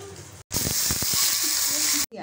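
Water-moistened rotis frying in oil on a hot tawa: a loud, steady sizzling hiss from the water meeting the oil, which starts abruptly about half a second in.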